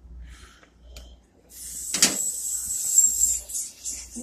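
Refrigerant gas hissing out of a gauge hose as the hose is purged of air. The hiss starts about a second and a half in, is steady with a faint high whistle, and lasts about two seconds, with a sharp click partway through.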